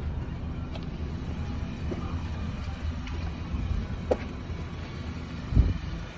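Steady low rumble with a couple of faint clicks and a short thump near the end.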